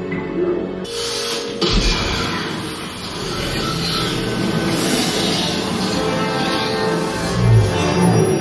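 Dark, dramatic orchestral score from a themed attraction's soundtrack. About a second in, a loud rushing hiss comes in over it and runs most of the way through, with a deep boom just after that and another near the end.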